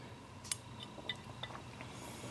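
Faint handling clicks of a Hi-Point 995 carbine's steel breech bolt and a small part from it being turned in the hands: one sharper click about half a second in, then several light ticks.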